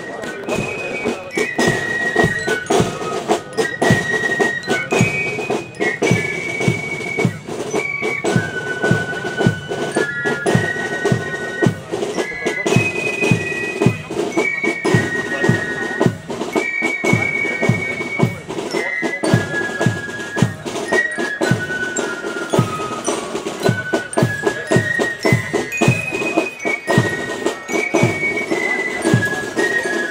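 A German Spielmannszug (fife and drum corps) playing a march: flutes carry a high melody over a steady marching drum beat of about two strokes a second.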